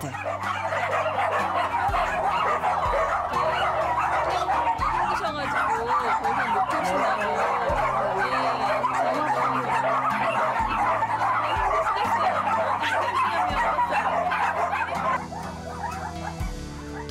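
Many dogs barking and yelping at once in a dense, unbroken chorus, easing slightly near the end, with background music underneath.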